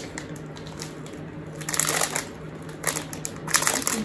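Plastic packet of a dry noodle snack crinkling as it is handled, in a few short bursts about two seconds in and again near the end.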